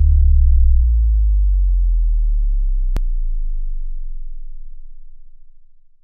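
A deep synthesized bass tone, slowly sinking in pitch and fading away: a trailer-style sub-drop sound effect. A single sharp click comes about three seconds in.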